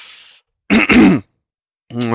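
A man clears his throat once, short and loud, in two quick pushes about a second in. A breath into the microphone fades out just before it.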